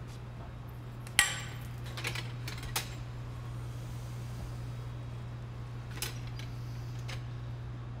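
A sharp metallic knock about a second in, ringing briefly, as the steel pipe is struck to break a glass platter free, followed by a few lighter clinks and knocks as the platter is set into the annealing kiln. A steady low hum runs underneath.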